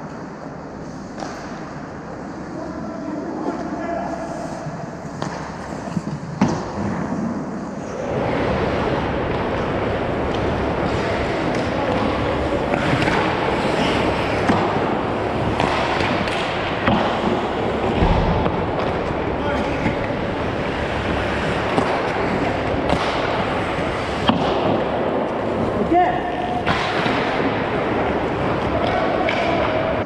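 Ice hockey play on an indoor rink: skates scraping on the ice, with sticks clacking and puck knocks echoing in the arena. It gets louder and busier about eight seconds in.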